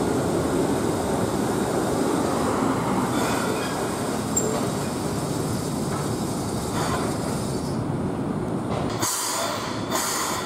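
Keihan 600-series two-car train running on street track, its steady running noise easing as it slows to a stop at a traffic signal.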